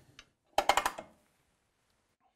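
A quick run of sharp metallic clicks, about half a second in and lasting about half a second, from the aluminium MFS 400 routing template and its fittings being handled as it is aligned on the beam.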